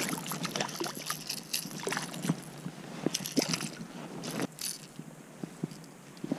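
Water splashing as a small perch is landed at the side of a float tube, then scattered light clicks and knocks as the fish and lure are handled, with one sharper click about four and a half seconds in.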